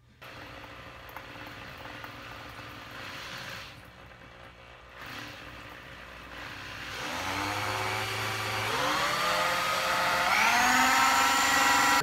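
Cordless drill driving a small drill-mounted water pump. It runs steadily at first, then in the second half speeds up in two steps, its whine rising in pitch and getting louder. The drill is being run in reverse to get the pump to work.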